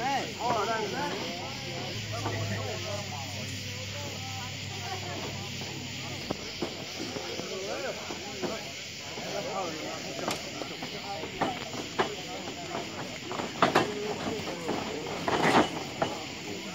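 Spectators talking and calling out around a fight ring over a steady hiss, with a low steady hum for the first six seconds. A few sharp, loud sounds come near the end.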